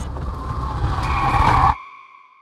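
Chevrolet Corvair's tyres squealing on runway concrete over road noise, growing louder as the rear end slides out in oversteer under hard back-and-forth steering. The sound cuts off suddenly near the end, leaving a fading ringing tone.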